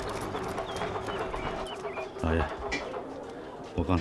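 Outdoor background ambience with birds chirping, small high chirps over a steady low hum.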